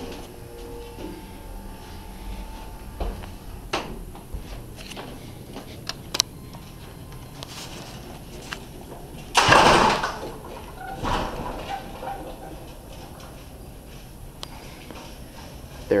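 Dover hydraulic elevator at its ground-floor stop. A steady hum fades out within the first couple of seconds, followed by the clicks and knocks of the car doors sliding open. A brief loud rush of noise comes about nine and a half seconds in.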